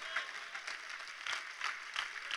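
Faint, scattered applause from an audience, many light claps.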